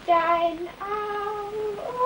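A solo voice singing held notes without accompaniment. Each note is a step higher than the one before: a short low note, a longer higher one, and a third, higher still, starting near the end.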